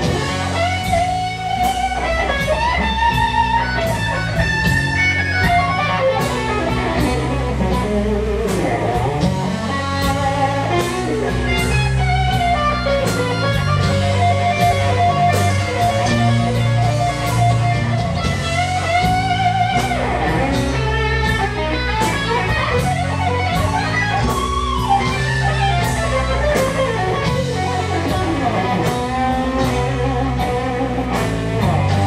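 Live instrumental rock-blues trio: a Stratocaster-style electric guitar plays a lead over bass guitar and drum kit. The guitar holds one long note about halfway through.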